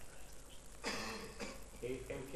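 A person faintly clearing their throat about a second in, against quiet room tone.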